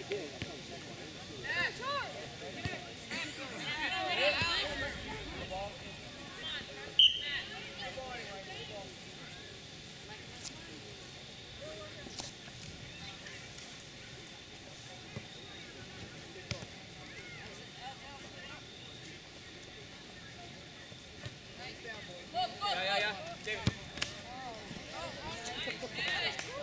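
Outdoor soccer match sound: scattered shouts and voices of players and spectators over a steady open-air background, with one sharp knock about seven seconds in, the loudest moment.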